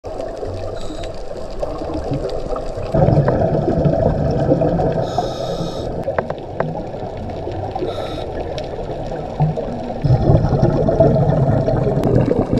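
Scuba diver's regulator breathing heard underwater through a GoPro housing. Muffled water noise, with rumbling bursts of exhaled bubbles about three seconds in and again about ten seconds in, and short hisses between them.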